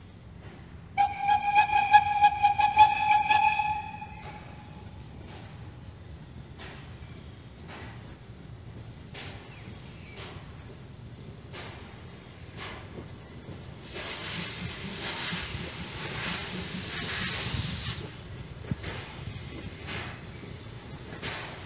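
Steam locomotive whistle blowing one steady blast of about three seconds. Then the approaching engine's exhaust beats about once a second, with a louder hiss of steam from about 14 to 18 seconds in.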